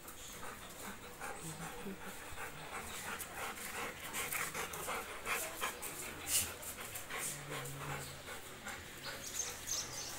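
Labrador dogs panting in quick, rhythmic breaths, with a sharp click about six seconds in.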